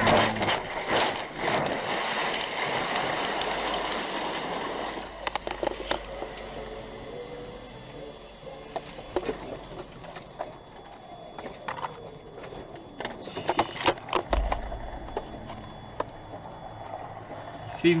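Dashcam audio from inside a semi truck's cab as it flips onto its side and slides: a loud scraping rush that fades over the first five seconds or so. Then scattered knocks and rattles as the cab and loose debris settle.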